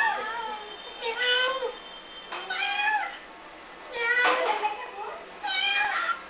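A high-pitched voice making about five short, meow-like calls, one every second or so, each bending up and down in pitch.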